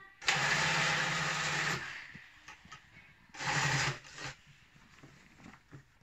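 Industrial sewing machine stitching in two runs: one of about a second and a half just after the start, then a shorter run of about half a second midway, with light handling clicks between and after.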